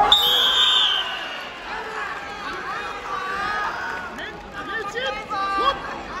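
A loud, high shout for about a second as the fighters clash, followed by overlapping voices and chatter from the crowd and officials in a large hall.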